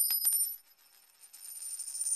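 A bright, high metallic chime sound effect: sustained ringing tones with a quick run of ticks that die away within the first half second. A faint shimmering tinkle swells back in after a second of silence.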